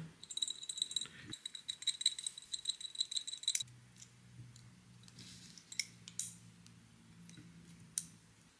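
Quick, faint metallic clicking and light rattling of small carburetor parts being handled as the brass float and its wire hinge pin are fitted into the carb body, for the first few seconds. A faint low hum follows.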